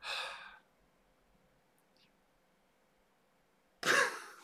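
A man gives a breathy sigh right at the start, then it goes quiet. Shortly before the end there is a sudden, sharper burst of breath as he breaks into a laugh.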